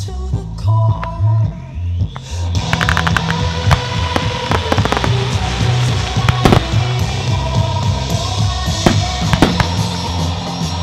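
Fireworks firing over music with a steady bass beat: from about two and a half seconds in, a dense hiss of burning effects sets in, crossed by many sharp cracks and several louder bangs.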